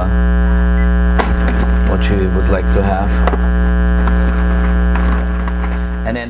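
Loud steady electrical hum with many overtones that drops away right at the end, with faint voices underneath it.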